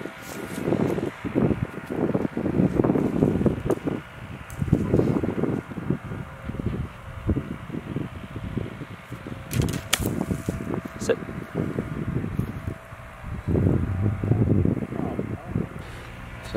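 A golf club strikes a ball out of long rough about ten seconds in, a sharp hit. Wind noise and low voices run underneath.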